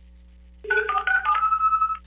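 A short electronic chime: after a brief hush, a quick run of stepped notes ends on one held high note, like a phone ringtone. It serves as the sting that opens a played-back listener voicemail.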